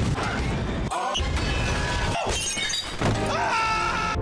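Animated-film soundtrack snippets spliced together, changing abruptly about once a second: music and sound effects, including a crash.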